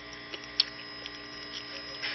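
Steady electrical hum, with a few faint ticks and one sharper click about a third of the way in.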